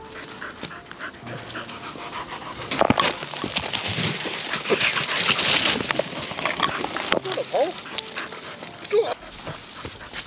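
Springer spaniels panting, with short whines near the end. A loud rustling noise fills the middle few seconds.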